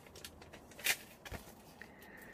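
Quiet handling sounds: a short papery rustle about a second in, then a soft low bump, as a paper seed packet is picked up.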